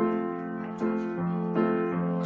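Upright acoustic piano being played: sustained chords, with a new chord struck roughly every half second.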